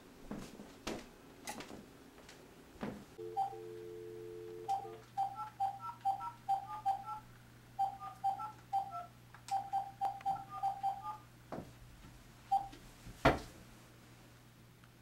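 A phone handset's dial tone for about two seconds, then a long run of short keypad beeps as a number is dialled, with a low hum on the line under them. A few knocks come before the dial tone, and a single loud knock near the end.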